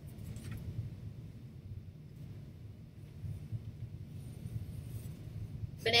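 Quiet room tone: a steady low hum with no clear event above it.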